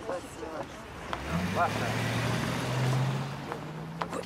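A car's engine pulling away: a low steady hum comes in about a second in, rises a little and swells, then eases off near the end, with faint voices in the background.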